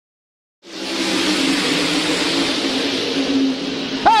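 Several open-wheel dirt-track race car engines running at speed together, a steady drone with a slightly wavering engine note. It starts abruptly out of silence well under a second in.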